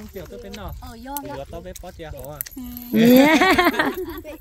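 People talking, with one voice much louder for the last second or so, and light metallic jingling in the background.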